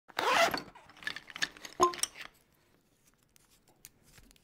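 A zipper on a fabric case being pulled open: one long rasp at the start, then several shorter rasps over the next second and a half, followed by a few faint ticks.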